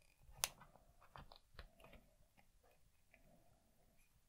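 Ratcheted plastic joint of a Super7 Man-E-Faces action figure being bent: one sharp click about half a second in, then a few faint clicks.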